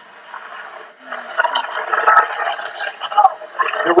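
Basketball TV broadcast audio: arena crowd noise with a commentator's voice, quiet for the first second, then growing much louder.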